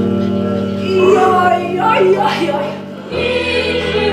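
Choral music: several voices singing over a sustained low chord, which gives way to a new chord about three seconds in.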